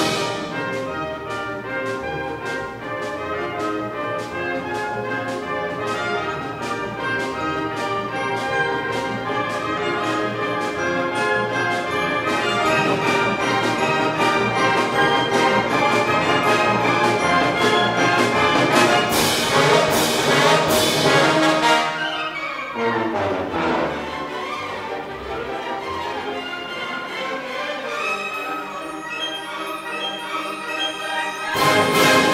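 Orchestral music with prominent brass, driven by a steady beat, building to a loud climax about twenty seconds in, then falling away in a downward run into a quieter passage.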